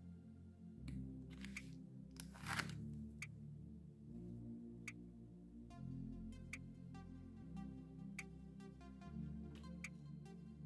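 Faint background music: sustained low chords with a soft tick about every second and a half. About two seconds in comes a brief scrape, the card scraper drawn across the metal stamping plate to clear the excess nail polish.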